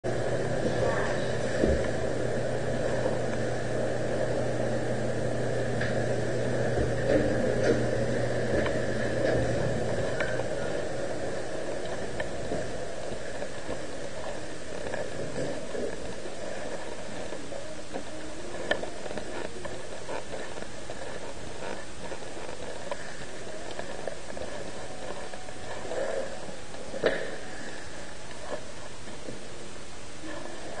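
Steady low hum of a moving elevator for about the first ten seconds. It is followed by quieter steady background noise with a few scattered knocks and rustles, the sharpest knock near the end.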